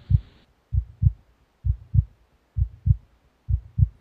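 A slow heartbeat: low paired thumps, lub-dub, about one beat a second, four beats in all.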